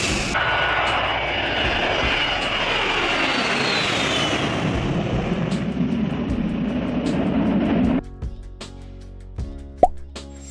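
Boeing E-3 Sentry jet flying past overhead, its four jet engines making a loud rushing noise with a turbine whine that falls in pitch as it passes. About eight seconds in the engine sound cuts off abruptly and light background music takes over.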